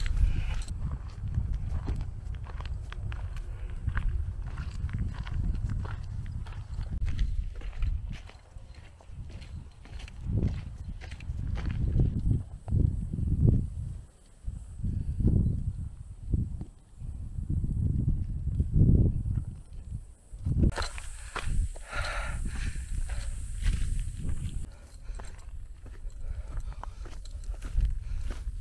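Footsteps crunching on a dry dirt path at walking pace, with wind buffeting the microphone in uneven low gusts.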